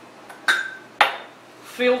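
Two sharp metal clinks from the stainless-steel parts of a stovetop espresso maker being handled and fitted together, the first with a short ringing tone.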